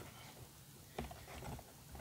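A quiet pause with one faint click about a second in, from fingers handling a plastic panel-mount socket in a plastic ammo box.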